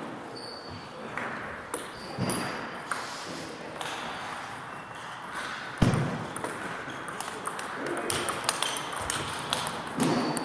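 Table tennis ball clicking off the table and the players' bats in a rally. The strikes come in quick succession, densest in the second half, with one louder thump about six seconds in.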